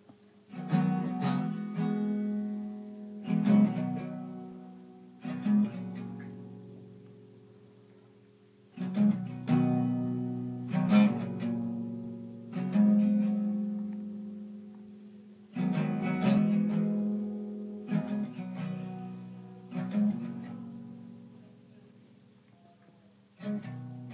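Solo acoustic guitar playing slow strummed chords. Each chord or short group of strums is left to ring and fade for a few seconds before the next.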